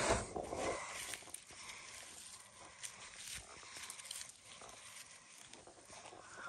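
Rustling of a person shifting across dry grass mulch and soil, loudest in the first second. Then faint scratching and crumbling of gloved hands digging through loose garden soil around sweet potato roots.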